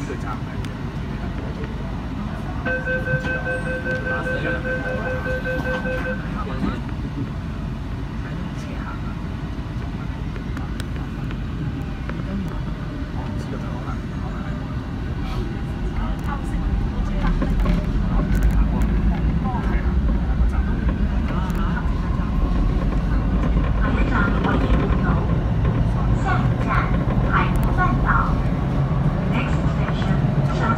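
MTR South Island Line train heard from inside the front car, a steady running rumble in a tunnel. A rapid electronic beeping sounds for a few seconds early on. About halfway through the rumble grows louder and deeper as the train picks up speed.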